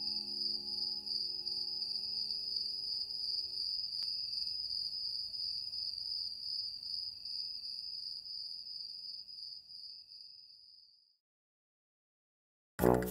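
Crickets chirping steadily as a night-time sound effect, under a held musical chord that stops about a third of the way in. The crickets then fade out to silence shortly before the end.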